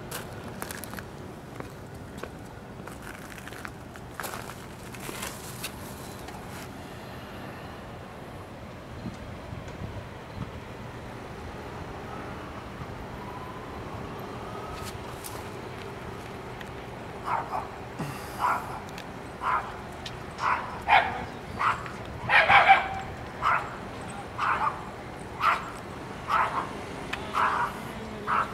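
Short animal calls repeated about once a second, beginning a little past the middle and running on over a steady outdoor background hum. A few knocks and rustles come near the start.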